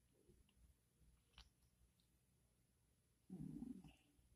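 Near silence: room tone, with a faint click about a second and a half in and a brief low rumble lasting about half a second near the end.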